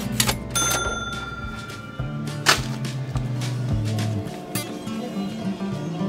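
Background music with a cash-register 'ka-ching' sound effect near the start: sharp clicks and a short bell ring. A single sharp click comes about two and a half seconds in.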